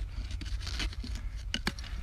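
A screwdriver scraping and picking at rocky soil around a buried glass bottle, with loose dirt crumbling and two sharp clicks about one and a half seconds in, as the bottle is worked loose from the rock.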